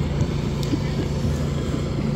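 Food truck's generator running steadily, a low even hum.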